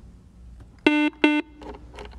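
Quiz-show buzzer sounding twice in quick succession, two short identical electronic buzz tones: a contestant buzzing in to answer a toss-up question.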